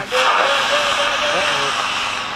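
A person's drawn-out, wavering voice, like a long untranscribed exclamation, over a steady hiss.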